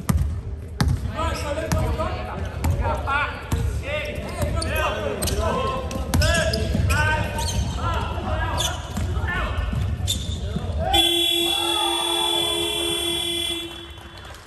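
Basketball game sounds on an indoor court: a ball dribbling on the hardwood-style sports floor, sneakers squeaking and players calling out. About eleven seconds in, a steady electronic buzzer sounds for roughly three seconds and cuts off, typical of a game-clock or scoreboard buzzer.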